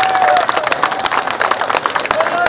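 Concert crowd clapping and cheering for an encore, with one long held voice call over the applause that ends about half a second in.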